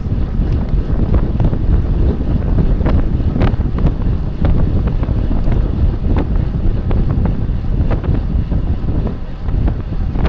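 Loud, steady wind rumble buffeting the microphone of a bicycle-mounted camera at racing speed, with a scattering of small knocks and rattles.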